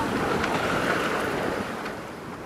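Wind and water rushing past a sailboat under sail: a steady rush of noise that begins to fade out near the end.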